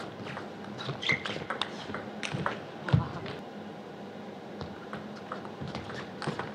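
Table tennis rally: the celluloid-type plastic ball clicking off rackets and the table in a quick irregular series of sharp ticks, with a heavier thump about three seconds in. A steady low hum runs underneath.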